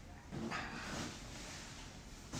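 A baby's short vocal squeal, about half a second in and lasting under a second.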